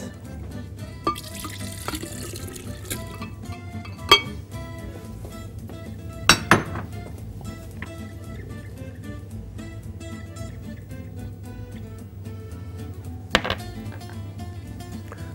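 Soft background music throughout. About a second or two in, milk and soaked dates are poured into a glass blender jar, and there are a few sharp clinks of a dish against the jar later on.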